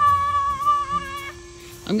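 A high-pitched voice holding one long, drawn-out note that stops about a second and a half in, followed by a faint lower hum.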